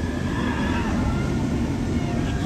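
Steel roller coaster train running along its track, a steady low rumble as it approaches.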